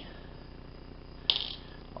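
A single sharp metallic click a little past halfway from a Schlage Primus lock cylinder as its plug is pushed out the front to gut it.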